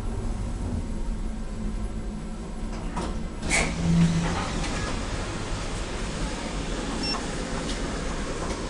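Otis Gen2 elevator car travelling, a steady low hum and rumble inside the enclosed cab. About three and a half seconds in comes a sharp click, followed by a short low tone.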